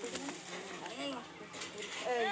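Faint voices and a few low, rounded cooing notes, with a brief rustle of dry branches about one and a half seconds in.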